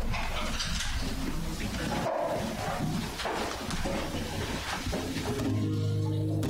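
A congregation getting to its feet and finding the song in their books: shuffling, rustling and handling noise. Near the end an instrument begins playing steady held notes as the music for the song starts.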